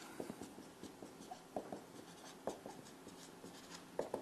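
Felt-tip marker writing letters on a whiteboard: faint, short scratching strokes with a few sharper taps as the pen tip meets the board.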